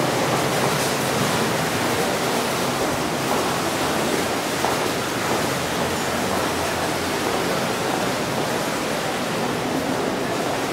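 Steady rushing ambient noise of an underground pedestrian passage, an even din with no distinct events.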